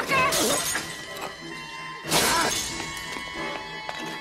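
A glass bottle smashing with a bright crash about two seconds in, over a tense orchestral film score; a sharp hit and a short cry come right at the start.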